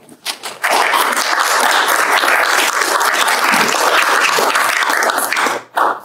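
Audience applauding: a few scattered claps build within a second into dense, steady applause, which stops shortly before the end.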